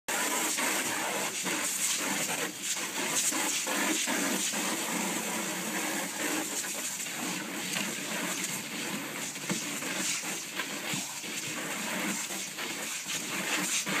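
Garden hose spraying water into a plastic paddling pool, a steady hiss broken by irregular splashes as a dog moves about in the water and snaps at the stream.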